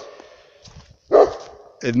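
A dog barks once, a short loud bark about a second in.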